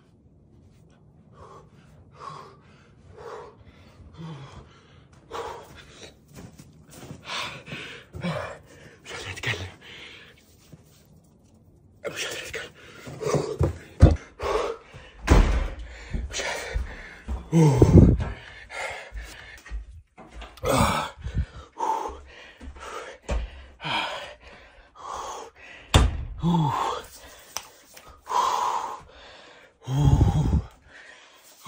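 A man gasping and breathing hard in short bursts with small vocal exclamations, the cold shock of snow on skin straight out of a hot sauna. The breaths are fainter at first and become loud and close to the microphone a little before halfway, with a few low thumps among them.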